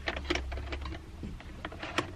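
Quick, irregular clicking and tapping of plastic interior trim as fingers push a dash cam power cable up into the gap along the car's headliner edge, with a sharper click near the end.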